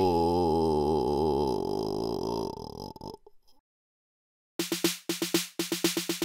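Home-recorded pop music: one song ends on a held chord with a wavering vibrato that fades out about three seconds in. After a second or so of silence, the next song starts with a quick, clipped percussive beat of short pitched hits in repeating groups.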